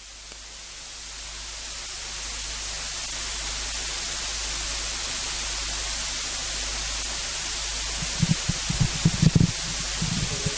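Steady electronic hiss from the microphone and recording chain, swelling over the first couple of seconds and then holding level. Near the end come a few low bumps of a handheld microphone being handled.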